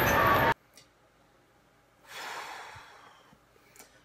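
Ballpark crowd noise that cuts off suddenly half a second in; after a pause, a man's long breathy sigh about two seconds in, fading out over a second or so.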